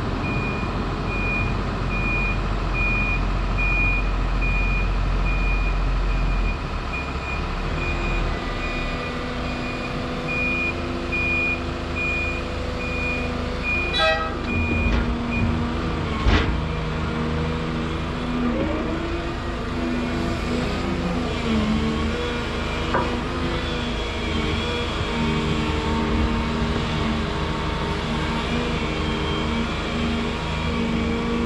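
A reversing alarm beeps at a steady, even pace for about the first fifteen seconds, most likely on the Hydrema 912 dump truck as it backs up to the excavator. Diesel engines of the dump truck and the Volvo excavator run underneath. A sharp knock comes about sixteen seconds in, and after that the engine note rises and falls as the excavator works.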